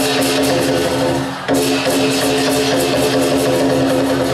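Lion dance music: a fast, even beat of drum and cymbals over sustained tones, breaking off briefly about one and a half seconds in before starting again.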